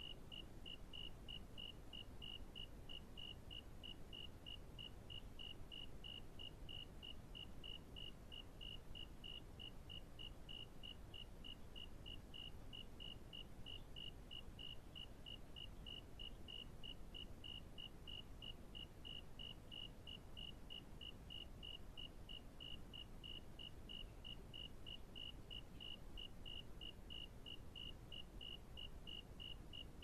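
A faint, even train of short high-pitched chirps, about three a second, over a low background rumble.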